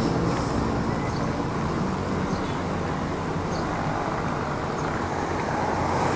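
Steady street and traffic noise with a low rumble, picked up by an action camera's built-in microphone while it rides on a bicycle's handlebars.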